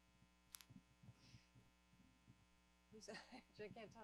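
Near silence with a steady electrical mains hum. There is a faint click about half a second in, then a voice starts near the end.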